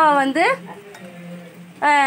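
A metal spoon stirring a thin white slurry in a small glass bowl. A voice speaks over the first half-second and again near the end.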